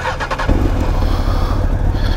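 Honda CBR929RR inline-four motorcycle engine starting: a brief whir of the starter, then the engine catches about half a second in and settles into a steady, quiet idle.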